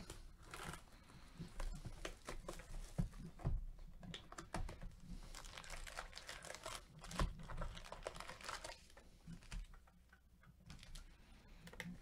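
Faint crinkling and tearing of plastic shrink wrap as a trading-card hobby box is unwrapped by gloved hands, then small clicks, taps and rustles as the cardboard box is opened and the wrapped card packs are handled and stacked.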